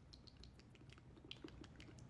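Near silence with a scattering of faint, short clicks.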